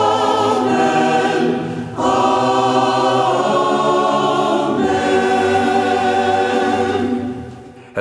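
Choir singing slowly in long held chords, changing chord about two seconds in and again about five seconds in, then fading out near the end.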